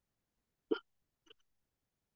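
A short, sharp sound from a person's throat, like a hiccup, about three-quarters of a second in, then a fainter one about half a second later.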